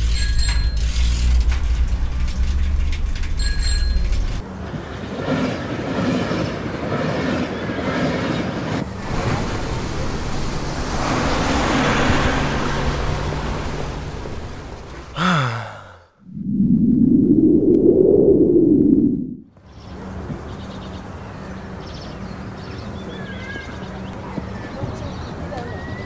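Vehicle sound effects: a loud low rumble with two short bell-like dings in the first few seconds, then a long stretch of noisy rumbling. About two-thirds of the way through comes a quick rising-then-falling glide, a brief drop to quiet, and a loud swell lasting about three seconds, followed by quieter noise.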